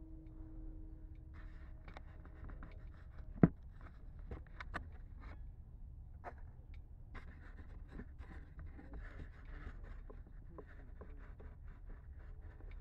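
Clicks, knocks and scrapes of the red model jet being handled on the ground as its canopy is taken off. There is one sharp snap about three and a half seconds in. Before it, a faint steady hum stops at about the same moment.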